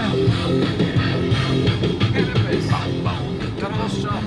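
Rock music with guitar playing steadily over the end card.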